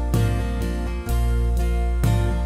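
Instrumental passage of live acoustic music: two acoustic guitars strumming chords over a bass guitar, a full strum falling about every second with the bass sustained underneath.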